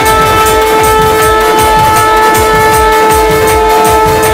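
A long spiralled shofar blown in one long, steady blast on a single held note. Band music with a regular drum beat plays underneath.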